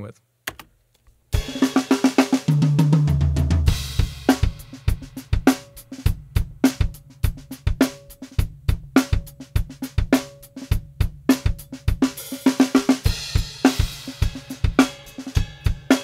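Raw, unmixed multitrack drum kit recording played back with all faders at zero and nothing panned, sounding pretty bad. It starts about a second in with low ringing tom hits, then settles into a steady groove of kick, snare, hi-hat and cymbals, with brighter cymbal crashes near the end.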